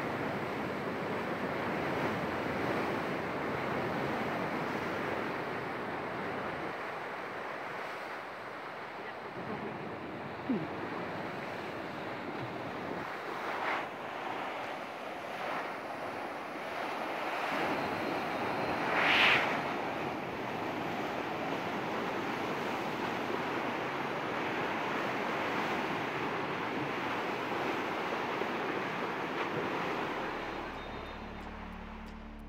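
Turbulent river water of a tidal bore rushing and churning in a steady wash of noise, with wind buffeting the microphone. A brief louder burst comes about two-thirds of the way through.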